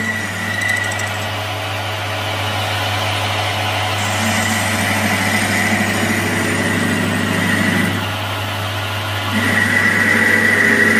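Capstan lathe running with a steady hum while a turning tool cuts metal from a rivet blank, reducing it to the head's size. The cutting noise grows a little louder for a few seconds in the middle, then eases.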